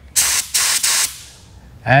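SATA Jet 100 B RP spray gun doing a short test spray of water at about 28 PSI: a hiss of compressed air and atomised water lasting about a second, briefly dipping once partway through, then tailing off.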